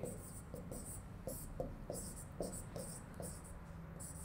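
Faint scratching and ticking of a pen writing on a board, in a quick series of short strokes.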